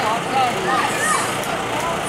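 Several voices of spectators and players calling out and chattering at once, overlapping, with no clear words.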